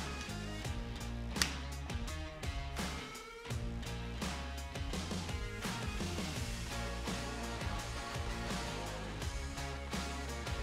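Background music with a steady beat and a bass line that drops out briefly about three seconds in.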